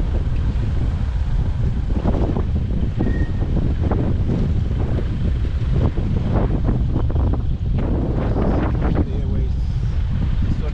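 Wind buffeting the microphone over the low rumble of an open safari vehicle driving along a dirt track, with scattered short knocks and rustles on top.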